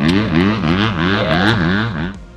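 Motocross bike engine on a track, its revs rising and falling about three times a second as the rider works the throttle.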